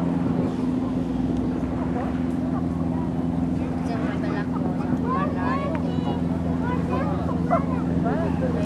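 A boat engine running steadily with a low, even hum, with people's voices chattering over it in the second half, and one brief sharp crack near the end.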